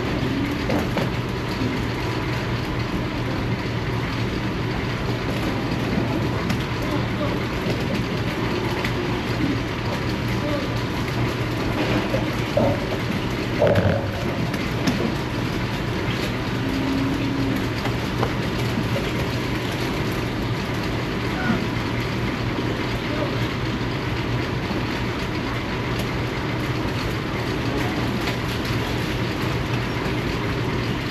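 Steady hum and whir of barn ventilation fans, with heifers moving through a wet concrete pen. A couple of short, louder sounds come about halfway through.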